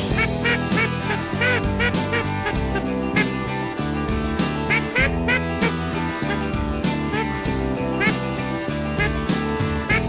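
Background rock music with a steady beat, over which a hand-blown duck call sounds in several short series of quacks.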